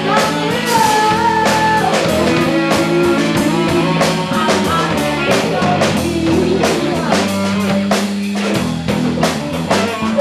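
A live band playing in a small room: a woman singing into a microphone over electric guitars and a drum kit beating steadily.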